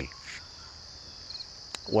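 A steady high-pitched chorus of insects, with short runs of chirps now and then, and a single click shortly before the end.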